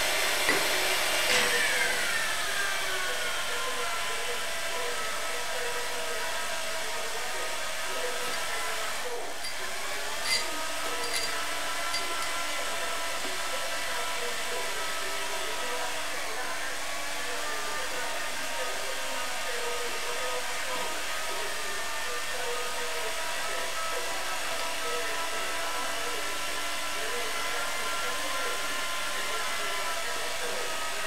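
Milling machine running, its motor and spindle making a steady whine of several tones that slides down in pitch over the first couple of seconds and then holds. One short click about ten seconds in.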